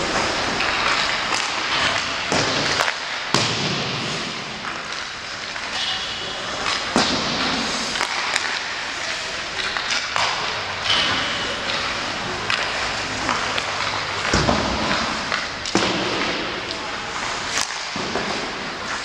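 Ice hockey warmup: pucks cracking off sticks and banging into the boards and glass, scattered irregular knocks, over the scrape and hiss of skates on the ice.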